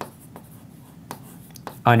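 A few short, faint scratchy strokes and taps, like handwriting, heard against quiet room tone in a pause in speech.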